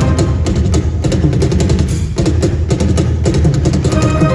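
Live amplified cello music over a fast, steady percussion beat.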